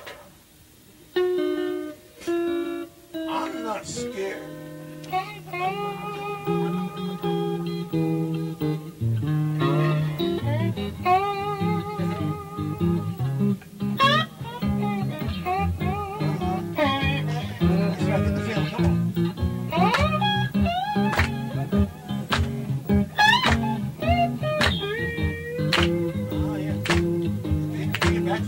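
Live blues band with guitar: a guitar plays a few notes alone, low bass notes come in about four seconds in, and the band plays on with bent guitar lines over it.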